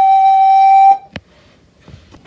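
Recorder holding one long steady note, the close of a tune, which stops about a second in; a single sharp click follows.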